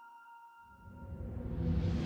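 Cinematic sound effect: after a near-silent start, a low rumbling swell begins about half a second in and grows steadily louder.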